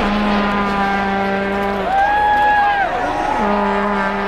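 A horn sounds two long, steady, low blasts, with a higher held tone between them, over the hubbub of a street crowd.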